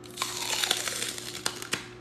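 Crunching and crackling like a bite into a crisp apple, as a man bites into a small bottle of apple juice. There are several sharp cracks over about a second and a half.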